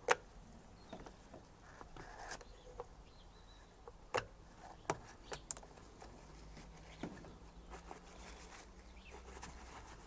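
Scattered small clicks and taps of gloved fingers handling the plastic brake fluid reservoir and its filler strainer, the loudest right at the start and a few more spread through the middle.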